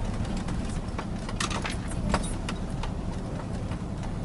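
Cab noise of a moving 5-ton wing-body truck: a steady low engine and road rumble, with a scatter of short, sharp clicks in the middle.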